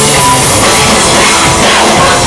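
Live rock band playing loud and steady, with distorted electric guitars, bass and a drum kit, recorded close to the stage so the sound is saturated and harsh.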